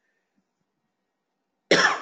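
Near silence, then a single short cough from a man near the end.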